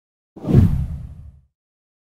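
A deep whoosh transition sound effect that swells quickly about a third of a second in and fades away by a second and a half.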